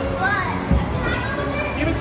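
Children's high-pitched excited voices calling out over a steady low rumble, with a single thump about three-quarters of a second in.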